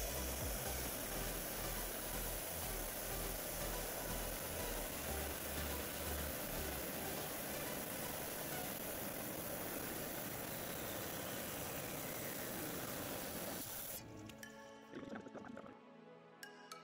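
Wet lapidary saw with a diamond blade cutting through an agate nodule: a steady grinding hiss that stops about two seconds before the end as the blade finishes the cut. Background music plays underneath.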